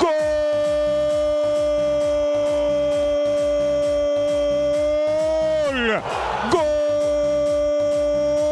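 A football commentator's long drawn-out "¡Gooool!" goal cry, held on one steady note for about six seconds. The pitch drops as his breath runs out, he gasps, and he takes up a second long held note. Background music with a steady beat plays underneath.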